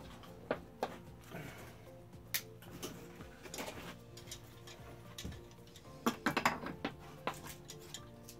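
Light clicks and knocks of a plastic mixing tub and a resin can being handled on a wooden workbench while fiberglass resin and hardener are set up for mixing. The knocks are scattered, with a quick cluster about six seconds in.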